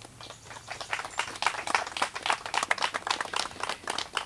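A small group of people applauding, with many hand claps at an uneven pace. The clapping picks up over the first second.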